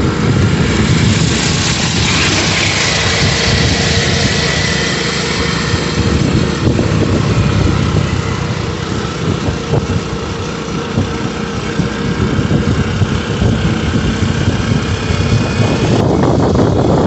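A vehicle driving along a road: its engine running steadily under continuous road noise.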